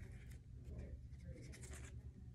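Faint rustling and scratching of a small paper cutout being handled and set down on paper, with a few light scratches in the middle.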